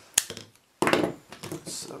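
PEX pipes and a hand tool being handled and set down on a wooden board: one sharp knock shortly after the start, then, after a brief hush, a burst of clattering and rubbing about a second in.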